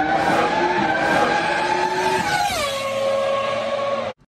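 Racing-car engine sound effect: a high engine note that drops in pitch about two and a half seconds in and then holds at the lower pitch.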